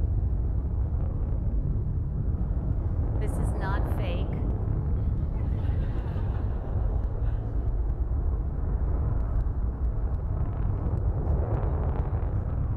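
Steady, deep rumble of a SpaceX reusable test rocket's engine firing as it lifts off and climbs, played over the hall's loudspeakers. A brief high-pitched wavering sound rises over it about three to four seconds in.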